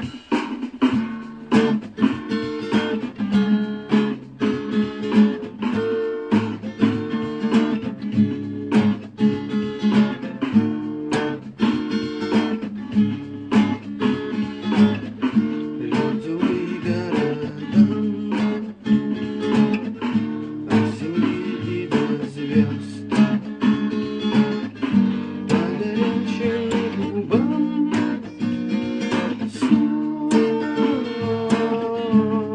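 Acoustic guitar strummed in a steady rhythm of chords, about two strokes a second.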